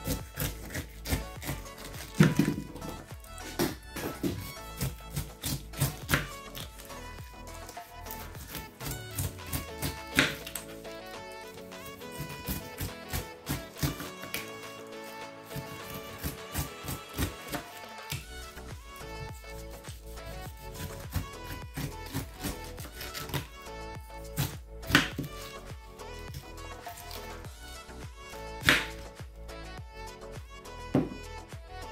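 Kitchen knife cutting the rind off a pineapple on a wooden cutting board: irregular taps and knocks of the blade striking the board, a few of them sharp and loud, over background music.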